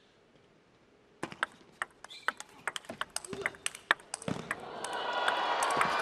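Table tennis ball clicking off rackets and table in a fast rally, starting about a second in, with crowd noise swelling up near the end.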